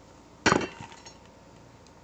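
A single sharp clink-like knock, about half a second in, with a brief ring as parts of a toy American Girl doll shower bump together while it is handled.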